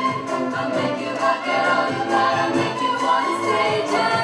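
String orchestra and choir performing together: violins bowing while the chorus sings, in a steady, full texture.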